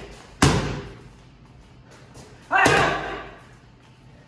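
Punches from boxing gloves smacking a trainer's focus mitts: one sharp smack about half a second in and another about two and a half seconds in, the second joined by a short shouted exhale.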